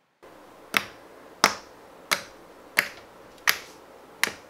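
Fingertips poking into soft green slime, each poke giving a sharp pop. There are five pops about two-thirds of a second apart, the first a little under a second in.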